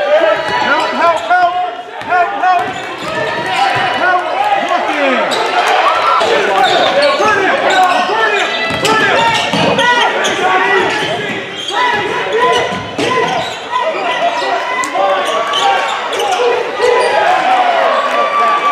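A basketball being dribbled and sneakers squeaking on a hardwood gym floor, with many short squeaks throughout and the echo of a large hall.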